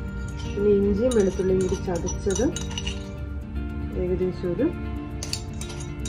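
Background music with a melody line, over which a metal spoon clinks against a plate several times, in two clusters, the second near the end, as crushed ginger and garlic are added to a pile of ground spices.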